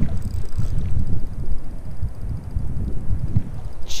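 Wind buffeting the microphone, a steady low rumble, over the sound of the river around a wading angler. A faint rapid ticking runs through the middle.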